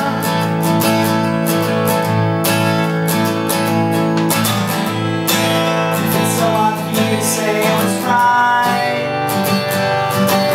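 Steel-string acoustic guitar strummed in a steady rhythm, playing full chords.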